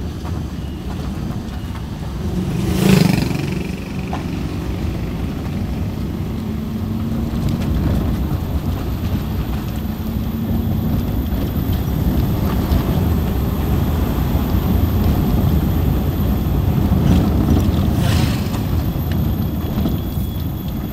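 Car driving slowly along a narrow lane, heard from inside the cabin: steady engine and road noise, with a brief louder swell about three seconds in.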